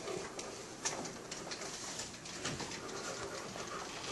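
A student slumped on his desk snoring softly in low, cooing breaths, over the faint scratch and tap of pencils on paper.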